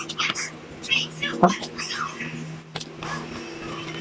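A woman talking softly, close to a whisper, while eating, with a couple of short clicks from her mouth and hands, over a steady low hum.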